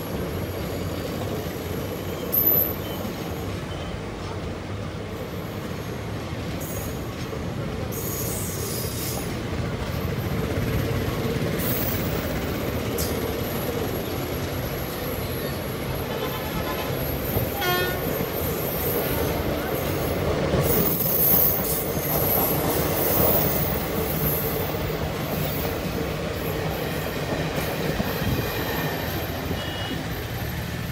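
Passenger coaches of an Indian Railways train rolling steadily past close by: a continuous rumble and clatter of wheels on rail, with a sharp clank about two and a half seconds in.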